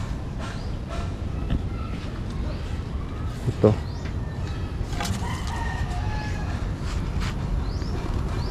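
A rooster crowing once in the background, about five seconds in, over a steady low rumble.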